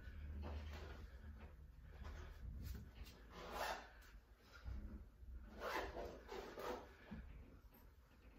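A person breathing out hard in short noisy breaths while curling a weight plate, the loudest about three and a half and six seconds in, over a low steady hum.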